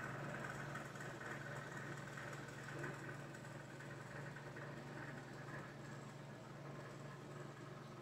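Faint, steady low hum under quiet room tone, with no distinct events.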